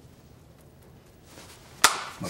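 Quiet room, then a single sharp smack near the end.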